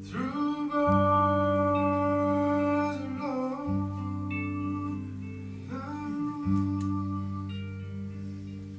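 Live song: a voice sings long wordless notes twice, sliding up into each and then holding it, over sustained low chords from a hollow-body electric guitar.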